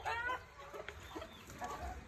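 Chickens clucking: one short call right at the start, then a few faint clucks.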